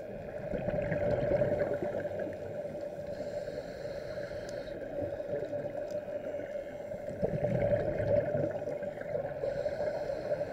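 Muffled underwater sound of scuba divers breathing through regulators, their exhaled bubbles gurgling in surges about a second in and again around seven to eight seconds, over a steady hum.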